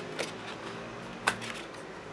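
Cardstock gift box and its paper sleeve being handled and pushed together: faint paper handling with two short clicks, the louder one about a second in.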